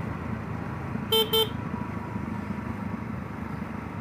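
A vehicle horn gives two quick high beeps about a second in, over the steady engine and wind noise of a motorcycle on the move.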